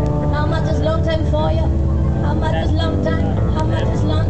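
Live pop song over a PA: a woman singing into a microphone over a band with a steady, heavy bass and sustained keyboard notes.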